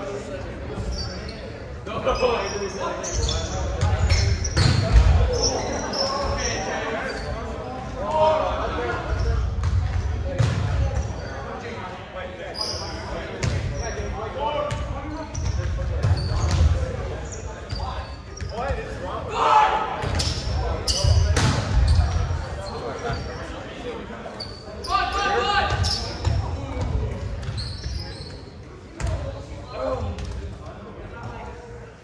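Volleyballs being hit and bouncing on a hardwood gym floor: irregular sharp slaps scattered throughout, echoing in a large hall.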